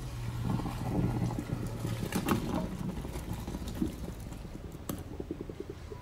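Boiling water and cooked potato chunks poured from a pot into a colander in a stainless-steel sink: a splashing pour that is loudest in the first half and then tapers, with a few sharp knocks of potatoes and pot against the metal.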